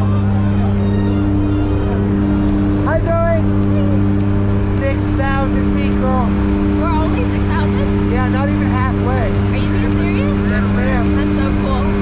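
Steady drone of a turboprop jump plane's engines and propellers heard from inside the cabin during the climb: a loud, unbroken low hum with several steady tones. Excited voices and laughter come in over it from about three seconds in.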